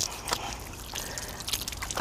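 Water trickling from the push-button spigot of a portable water jug onto hands as they are wetted for hand washing.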